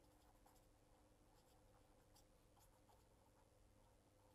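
Near silence with faint, scattered scratches of a pen writing on paper.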